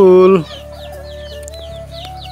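A person's drawn-out 'laa' call to chickens, ending about half a second in. Then chickens peep and cluck in short, repeated falling chirps.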